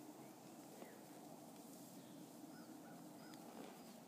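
Near silence with a few faint, short bird chirps scattered through it.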